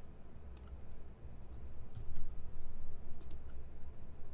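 A handful of separate, sharp clicks from a computer mouse as spreadsheet cells are selected and copied, over a faint steady low hum.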